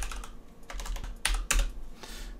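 Computer keyboard typing: an irregular run of keystrokes as a name is typed in, with the loudest clicks coming a little after a second in.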